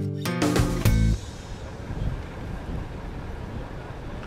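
Acoustic guitar music that cuts off about a second in, followed by steady wind noise buffeting an outdoor microphone.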